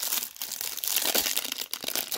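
Clear plastic wrapper on a stack of trading cards crinkling and tearing as it is pulled open from its tab: a dense run of small crackles.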